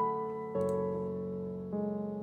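Software grand piano playing sustained chords, the piano part of a dancehall riddim. The chord changes about half a second in and again near the end.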